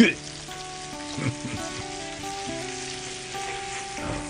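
Breaded trout fillets frying in hot oil in a cast-iron skillet: a steady sizzle.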